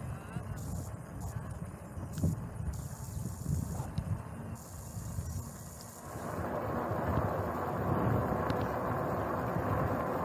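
Wind buffeting the microphone of a bicycle-mounted camera, with the rumble of bicycle tyres rolling over concrete slabs. About six seconds in, a louder, steady hiss sets in.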